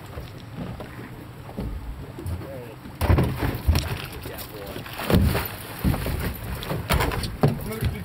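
A hooked cobia thrashes and splashes at the surface beside the boat as it is gaffed: irregular loud splashes and knocks that start suddenly about three seconds in, over low wind rumble on the microphone.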